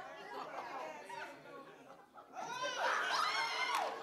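Congregation voices reacting in a church hall: scattered talk from several people, quiet at first and growing louder about two and a half seconds in.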